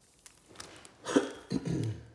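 A man's short throat-clearing or cough sound about a second in, followed by a brief low voiced hum, over light crinkling of a foil trading-card pack being picked up.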